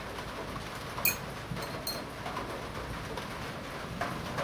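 Two light metallic clicks about a second apart: steel tweezers tapping against a metal watch case ring as it is picked up.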